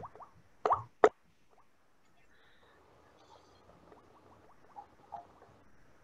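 Two short knocks about a third of a second apart, a second in, followed by faint scattered clicks.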